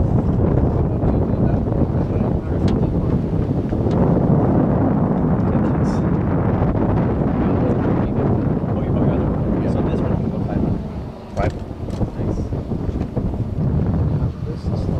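Wind buffeting the microphone: a loud, steady low rumble that drops away briefly about three-quarters of the way through.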